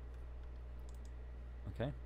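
A few faint clicks from a computer mouse and keyboard while a value is entered in software, over a steady low hum.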